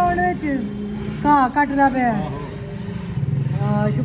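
A steady low motor drone running under a person's talk, growing stronger about three seconds in.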